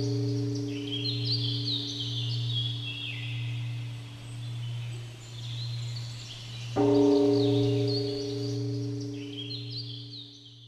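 A deep bell struck twice, about seven seconds apart, each stroke ringing on with a slowly wavering low hum. Birdsong chirps over it throughout.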